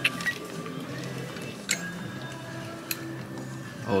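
Music playing at a moderate level, made of steady held notes, with a couple of sharp clicks of plastic hangers knocking along a metal clothes rack.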